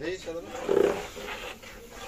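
Voices talking and calling out, loudest in one strong call a little under a second in.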